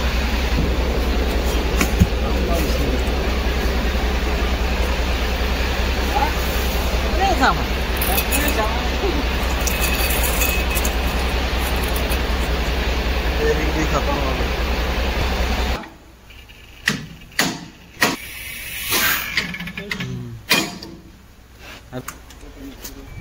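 Loud, steady machine noise with a low hum and faint voices behind it, cutting off abruptly about two-thirds of the way in. After that come scattered metal clinks and knocks of parts being handled.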